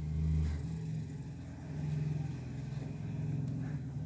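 A low, steady rumble with a hum, loudest in the first second and then holding level, in the manner of a motor or vehicle engine running.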